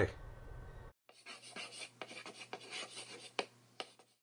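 Chalk scratching and tapping on a chalkboard as words are written out: a run of irregular scrapes and sharp taps starting about a second in and lasting about three seconds, then cutting off suddenly.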